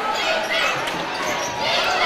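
A basketball being dribbled on a gym court, under the steady noise of the gymnasium crowd.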